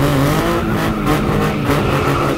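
Car sound effect: an engine revving up and holding high revs, with tyres squealing over a loud hiss, like a burnout.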